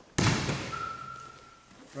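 Two grapplers' bodies slamming onto a training mat as a back-arch throw lands: one heavy thud a fraction of a second in, dying away with a short echo.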